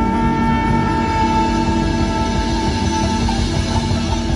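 Live ska band playing an instrumental: the horn section (trombone and saxophones) holds one long note over drums and bass.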